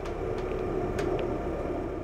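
Steady low rumble with a faint, even hum, and a couple of light ticks about half a second and a second in.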